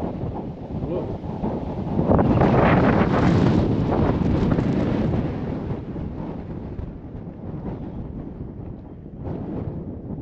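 A gust of wind buffeting the camera microphone. It swells to its loudest about two seconds in, holds for a few seconds, then dies down to a lighter steady breeze.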